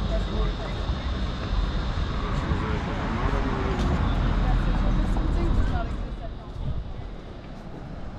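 Outdoor street ambience: a steady low rumble with people's voices nearby, growing quieter over the last two seconds.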